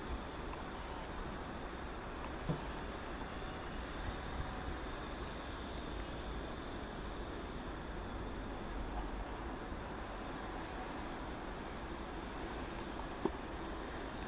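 Manchester Metrolink M5000 tram approaching slowly on its track, heard as a low, steady running noise against outdoor background, with a couple of faint clicks.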